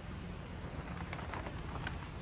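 Thin plastic sheeting crackling and rustling as it is handled and pushed aside, a run of short crackles in the second half, over a steady low background noise.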